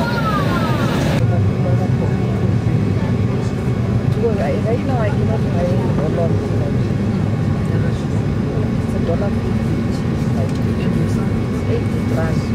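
Airliner cabin noise as the plane taxis: a steady, loud low rumble of engines and cabin air, with faint voices now and then underneath.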